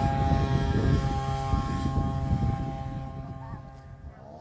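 Steady engine and road noise inside a moving Ford car's cabin: a low rumble with a constant drone over it, fading near the end.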